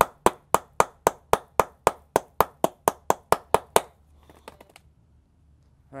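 Hammer striking a battery cable lug that rests on a wooden block, about fifteen quick, even taps at roughly four a second, stopping about four seconds in. The blows fold one side of the loose-fitting lug under so it grips the wire.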